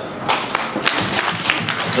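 A brief round of applause from an audience: many hands clapping, starting a moment in.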